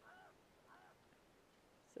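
Near silence, with two faint short pitched calls: one at the very start and one a little under a second in.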